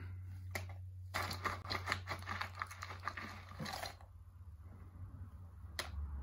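Peanuts in their shells crunching and crackling, a quick run of sharp clicks from about a second in until about four seconds, over a low steady hum.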